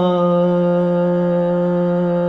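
A man's voice singing one long, steady note in a Carnatic swara exercise, with a short scoop into the pitch as the note begins.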